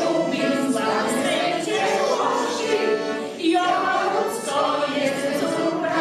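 A folk choir singing together, women's and men's voices in a large hall, the song running continuously.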